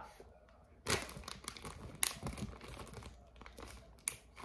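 Packaging crinkling and rustling as it is handled, with two sharper crackles about one and two seconds in.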